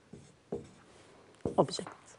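Marker writing on a whiteboard: a couple of short strokes, then a longer squeaky stroke about one and a half seconds in.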